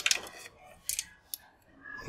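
A few brief light clicks of paintbrush handles knocking against each other and the plastic display rack as flat brushes are pulled from it and gathered in hand.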